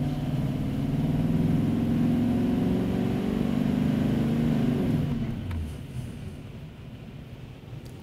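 2018 GM Duramax L5P V8 turbodiesel pulling under full load on a chassis dyno on its stock tune, its pitch climbing slowly as the ramp run carries it up toward 3,000 rpm. About five seconds in the run ends and the engine sound falls away, quieter.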